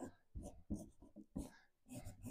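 Wax crayon being scribbled onto paper on a drawing board: a series of short, faint, irregular scratchy strokes as a darker colour is laid on.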